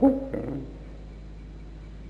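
A man's speaking voice finishing a word in the first half-second, then a pause filled only by a steady low hum and faint hiss.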